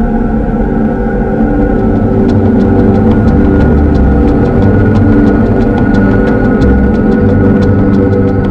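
Dark, droning trailer score: a low rumble under several sustained tones, joined about two seconds in by a run of sharp, irregular ticks.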